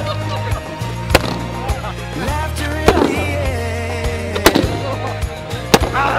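Background music with a steady bass line, cut by four sharp, loud pops about a second and a half apart: balloons bursting.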